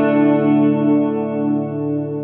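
Electric guitar (Dunable Cyclops DE) chord ringing out through the Dunable Eidolon delay/reverb pedal, held and slowly fading, with a slight wavering in the tone.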